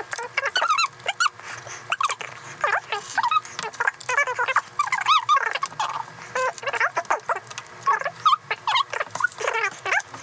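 Two people's voices sped up by a time-lapse into fast, squeaky, chipmunk-like chatter, no words intelligible.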